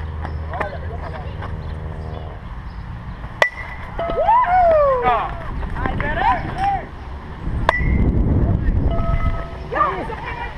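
A softball bat hitting the ball with a sharp crack and a brief ringing ping, followed by players shouting; a second crack of the same kind comes about four seconds later. There is low wind rumble on the microphone shortly after the second hit.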